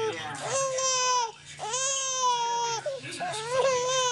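Infant crying while lying face down in tummy time: three drawn-out wails, each about a second long, with short breaths between.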